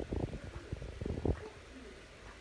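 Puma licking its fur while grooming, a run of soft, irregular low licks close to the microphone that stops after about a second and a half.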